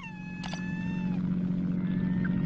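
A gull's cry: one long, slightly falling call lasting about a second, with a short click about half a second in. A steady low hum fades in beneath it and holds.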